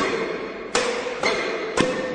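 Badminton racket strings striking a shuttlecock in a fast flat drive exchange: three sharp cracks about half a second apart, each with a short echo of a large hall.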